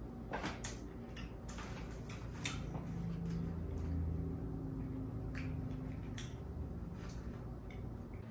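Quiet room tone: a low steady hum with a few faint, scattered clicks.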